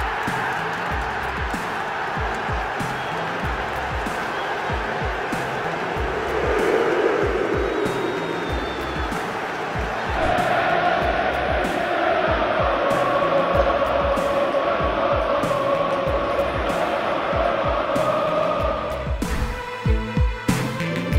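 A football stadium crowd over background electronic music with a steady thumping bass beat. The crowd noise swells partway through, and from about halfway the crowd sings a long held chant until just before the end.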